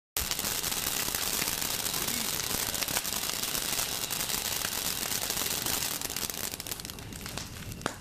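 Firework fountain spraying sparks with a steady hiss and scattered crackles, dying away after about six seconds, leaving a burning wood bonfire crackling.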